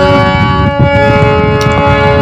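Harmonium holding a sustained chord of reed tones, moving to a new chord a little under a second in. A rough low noise runs underneath.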